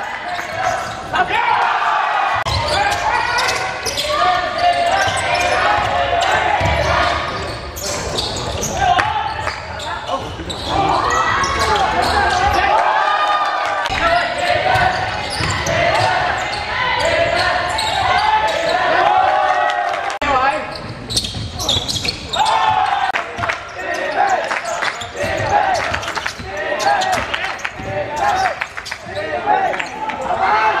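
Sound of an indoor basketball game: players and benches calling out, with the ball bouncing on the court now and then, echoing in a large sports hall.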